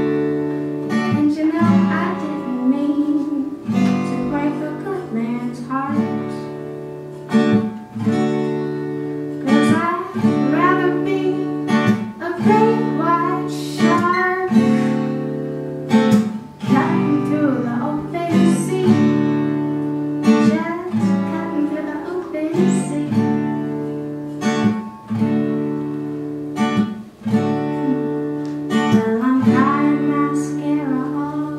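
Live solo acoustic guitar strummed in chords with a steady rhythm, a sung melody over it at times.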